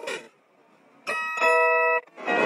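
Pitched-down logo jingle. Music cuts off at the start, there is near silence for about a second, then a sustained chime-like electronic chord comes in and holds, growing louder partway through.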